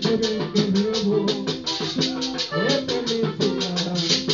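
Live folk band with a button accordion and an acoustic guitar playing a melody over a quick, steady high percussion beat. This is an instrumental stretch without singing.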